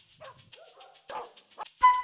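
A dog barking twice in short bursts over background music with a fast ticking beat. Near the end a loud hit brings in a sustained melodic phrase in the music.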